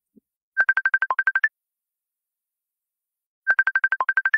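A repeating electronic beep pattern like a ringtone: a quick run of about a dozen short, high beeps on one note, with one lower beep partway through and a slightly higher last beep. It plays about half a second in and again about three seconds later.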